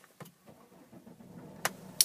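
2009 Volvo XC60 engine being started, heard faintly from inside the cabin, with a low hum building in the second half as it catches and settles toward idle. There is a sharp click about one and a half seconds in.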